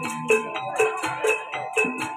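Live Javanese gamelan playing jaranan (kuda lumping) dance music: a fast, even beat with a high metallic rattle about four times a second over steady ringing metal tones and occasional low drum strokes.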